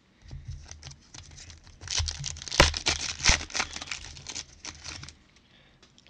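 Foil trading-card pack wrapper torn open and crinkled by hand, a dense crackling that builds about two seconds in, peaks in the middle and dies away near the end.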